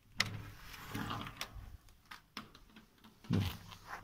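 A few sharp clicks and knocks with low rustling between them, then a man saying "No" near the end.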